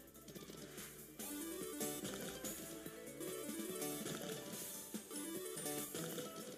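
Sweet Bonanza 1000 slot game's music playing quietly during a free spin, a stepping melody with a few short sound effects as the reels cascade.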